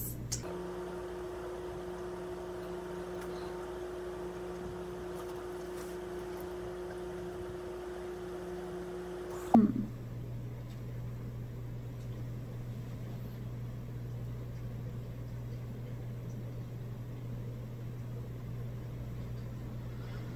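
Steady low electrical hum of room tone. A second, higher steady hum joins it for the first nine or so seconds and cuts off with a click.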